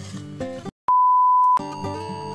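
Background music stops short, and a single steady high-pitched beep, one pure tone lasting under a second, sounds loudly; then the music picks up again.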